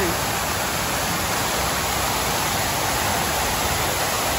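Stone Flower fountain's many water jets splashing into its basin, an even, steady rush of falling water.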